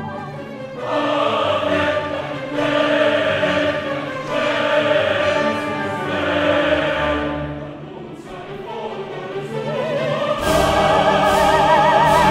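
Opera music: a chorus singing with orchestra in swelling phrases. It eases off briefly, then grows louder and fuller near the end.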